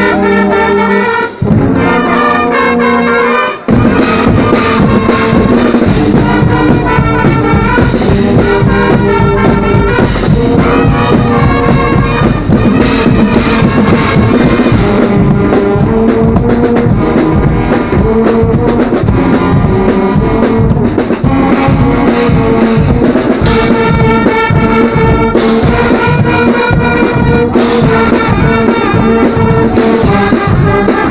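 Guggenmusik carnival band playing loudly: trumpets, trombones and sousaphones over drum kits and cymbals. An opening brass phrase breaks off briefly twice, then about four seconds in the drums come in and the full band plays on with a steady beat.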